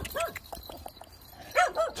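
Rural village dogs barking on alert: one bark just after the start, then two quick barks near the end.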